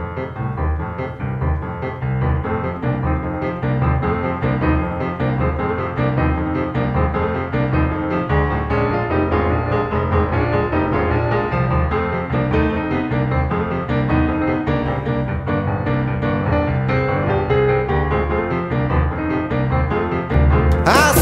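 Boogie-woogie piano playing the instrumental opening of a song, a repeating low bass figure driving a steady swinging rhythm under chords higher up.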